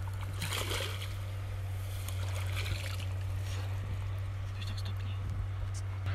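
Water splashing and sloshing as a hooked carp thrashes in a landing net drawn in at the bank, in irregular bursts over a steady low hum.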